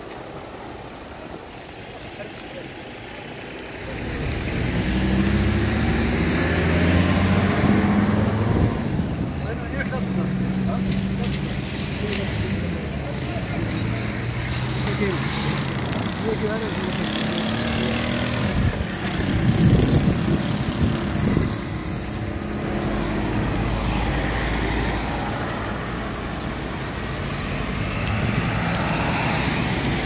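Road-vehicle engines running close by, a steady low hum that grows louder about four seconds in, with people talking over it.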